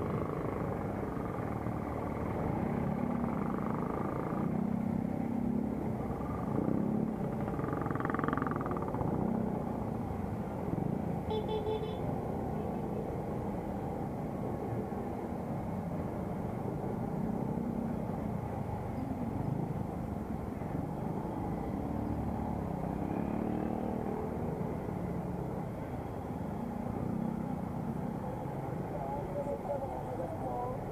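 Motorcycle engine running at low speed in slow, congested traffic, with the steady noise of the vehicles around it. A short high beep sounds about eleven seconds in.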